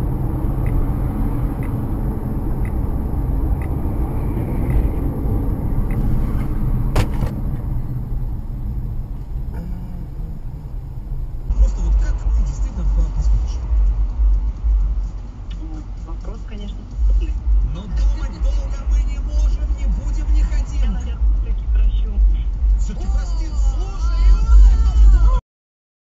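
Dashcam audio from inside a moving car: steady engine and road noise, with one sharp click about seven seconds in. After a cut near the middle, a heavier low road rumble runs until the sound cuts off abruptly just before the end.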